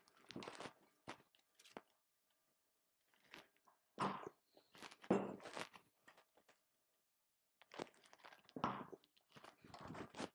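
HX50 hand swage tool crimping a stainless steel swage terminal onto balustrade wire: three bouts of short crunching strokes a few seconds apart, at the start, about four to six seconds in, and near the end.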